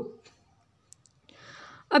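A pause in a woman's speech: a faint click about a second in, then a short intake of breath just before she speaks again.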